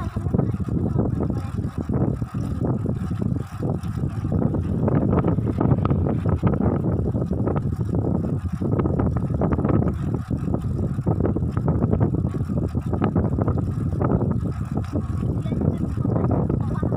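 Wind buffeting the microphone of a camera mounted on a moving bicycle: a steady, loud low rumble that swells and dips irregularly, mixed with the bicycle's rolling noise.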